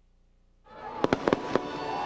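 Fireworks sound effect: after near silence, a burst of noise comes in about two-thirds of a second in, followed by a quick run of about four sharp bangs, with music starting underneath.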